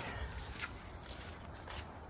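Footsteps on leaf-covered dirt, a few uneven soft steps with light knocks of handling noise.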